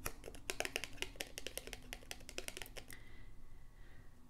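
A deck of tarot cards being handled and flicked through: a quick, dense run of light card clicks for about three seconds, then it stops.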